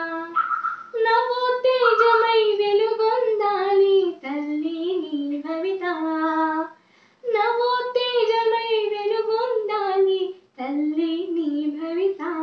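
A girl singing an Indian patriotic song solo and unaccompanied. She sings in long phrases with held, sliding notes, pausing briefly for breath three times between phrases.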